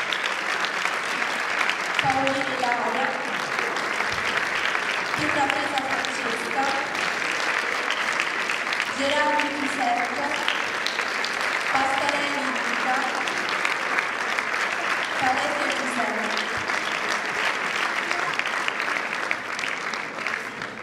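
Audience applauding steadily, with short bursts of voices rising over the clapping every few seconds.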